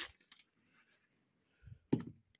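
A few faint, sharp clicks in a quiet room: one at the start, a small one just after, then a soft low knock and another click near the end.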